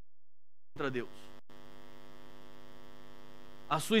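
Electrical mains hum, a steady buzz of many evenly spaced tones, coming in after a moment of dead silence when the audio feed cuts back in. A man's voice starts near the end.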